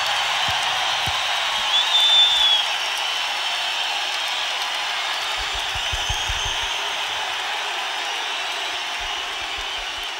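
Large concert crowd cheering and applauding at the end of a heavy-metal song, a steady roar of voices and clapping that slowly fades. A single high whistle rises above it about two seconds in.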